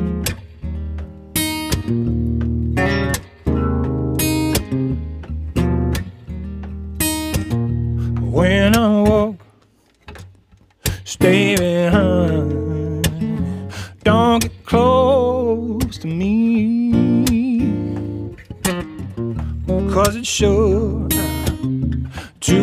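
Steel-string acoustic guitar strummed and picked, with a man's voice singing over it in places. The playing breaks off briefly about ten seconds in, then resumes.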